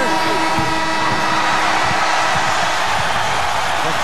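Basketball arena's game-ending horn sounding as time expires, one steady tone lasting nearly three seconds and then cutting off, over a loudly cheering crowd.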